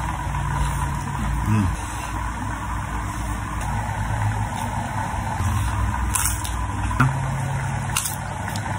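A motor or engine running steadily, a low hum throughout, with a sharp click about seven seconds in.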